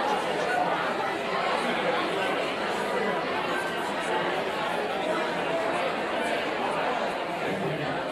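Indistinct chatter of several people talking at once, a steady babble with no single voice standing out.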